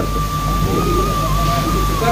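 Background music: a single high note held steadily, wavering slightly about halfway through, over a low steady hum.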